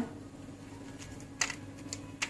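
Quiet room tone with a steady low hum, broken by two light clicks about one and a half and two seconds in, from a hand placing chopped tomato onto a crisp fried papad on a plate.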